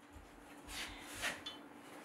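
Steel round bar scraping against another steel bar as it is wound around it by hand, two short metallic scrapes about a second in, the second louder, over a steady low hum.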